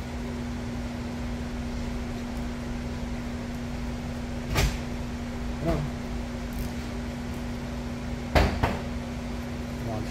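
A steady low hum with two sharp knocks about four seconds apart and a lighter knock between them.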